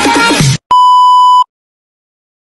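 Background music cuts off abruptly about half a second in, followed by a single loud, steady electronic beep lasting about three-quarters of a second, then silence.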